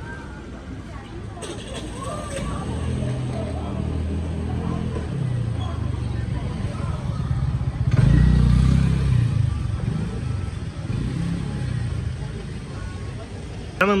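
Street noise dominated by a motor vehicle's low engine rumble, which swells to its loudest about eight seconds in and then fades, with voices in the background.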